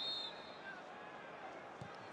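Stadium crowd noise from a football match: a steady hubbub from the stands, with a short high whistle right at the start.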